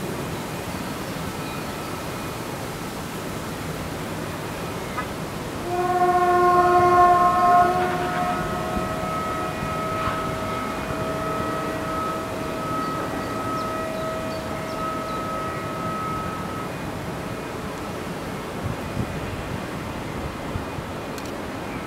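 Steady distant hum of heavy industry. About six seconds in, a loud two-note horn blows: one note stops after about two seconds and the other fades out slowly over the next eight seconds or so.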